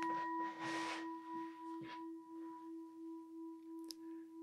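Singing bowl ringing on after being struck, its tone slowly fading with a steady wavering beat. There is some rustling handling noise in the first second and a small click near the end.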